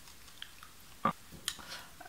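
Mostly quiet, with a few short faint clicks and small mouth noises, the clearest a little after one second in and again about half a second later. These are handling sounds as wool strands are pushed into the holes of a cardboard disc.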